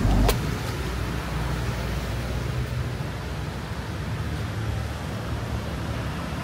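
A last sharp beat of music just after the start, then steady outdoor beach ambience: a low rumble with a soft hiss over it.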